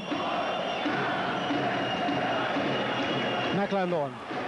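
Basketball arena crowd: a steady din of many fans' voices, with one louder voice near the end.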